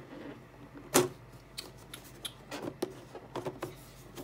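Hard plastic game player boards clicking and knocking against each other and the box as they are handled and lifted out, with one sharp knock about a second in and smaller clicks after it.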